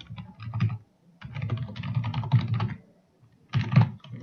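Computer keyboard typing in quick runs of keystrokes, broken by short pauses about a second in and again near three seconds. A loud flurry of keys comes just before the end.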